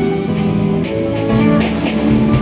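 Live ensemble music: violins holding long notes over an accompaniment, with a few sharp percussive strokes about a second in and near the end.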